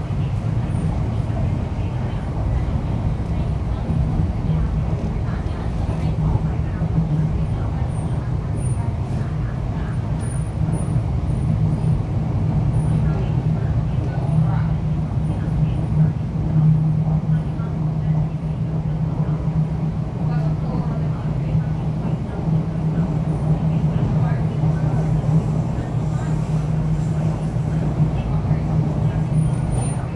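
Cabin noise of an MTR East Rail Line R-Train electric multiple unit running at speed: a steady low rumble of the train on the track.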